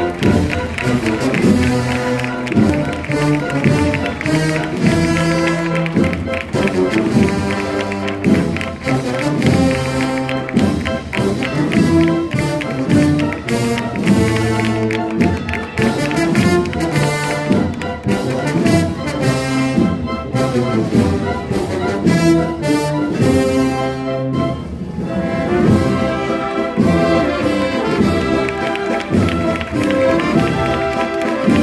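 A brass and wind concert band of tubas, euphoniums, saxophones and other brass plays a processional march at full volume, heard from close among the players.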